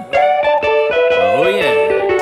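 Music: an electric guitar phrase over backing music, with a note bent up and back down about a second and a half in.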